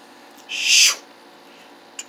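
A single harsh, hissing owl screech about half a second in, lasting under half a second.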